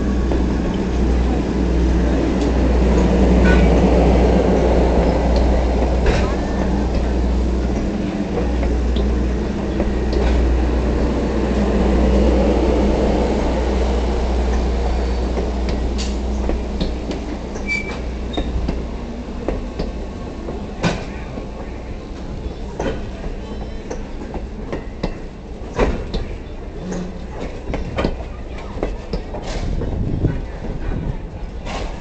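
Train running on the rails: a steady low rumble that eases off about two-thirds of the way through, with scattered clanks and knocks that grow more frequent towards the end, as it slows on arrival.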